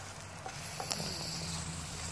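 Fish fillets frying in oil in a pan: a steady, low sizzle, with one light click about a second in.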